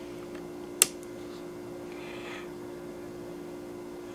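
A single sharp click as the power switch on a 400-watt power inverter is flipped on, over a steady electrical hum.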